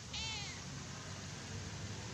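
A tabby-and-white stray cat gives one short, high meow that falls in pitch, just after the start, begging for a share of the fish.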